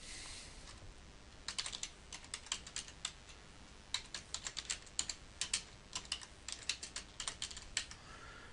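Computer keyboard typing: quick runs of keystrokes starting about a second and a half in, with a brief pause partway through.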